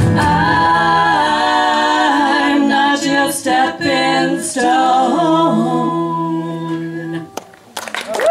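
Several voices singing the song's closing line in harmony, a cappella, after the band's guitars and bass drop out in the first second. The voices hold the last chord and stop together about seven seconds in.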